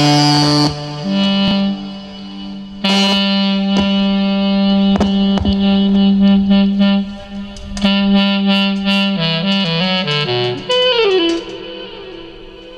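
Live band music with a lead line of long held notes in a saxophone-like tone, over keyboard accompaniment and drum hits. The lead drops back for a moment early on, then returns, and slides down in pitch near the end.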